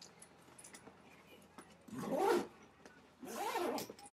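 The zipper of a carry bag being pulled shut in two quick strokes, about two seconds in and again near the end. Each pull is a short rasp whose pitch rises and falls as the slider speeds up and slows.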